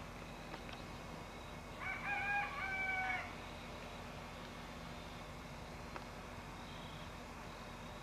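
A rooster crowing once, about two seconds in, the call lasting about a second and a half.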